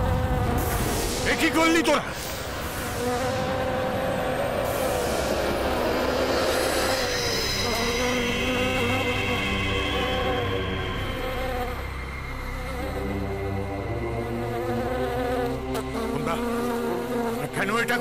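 A swarm of bees buzzing steadily, a dense drone. A brief whooshing sweep comes about a second and a half in.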